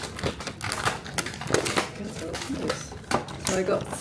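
Irregular clicks and crackles of close handling, several a second, with a few spoken words near the end.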